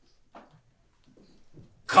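A mostly quiet stretch with a few faint sounds, then a man's voice starting loudly near the end.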